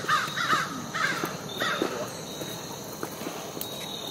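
A bird giving four short calls in quick succession in the first two seconds, then falling quiet.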